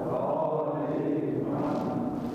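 Many men's voices chanting together in unison: a mosque congregation's collective recitation at the close of the sermon's prayers.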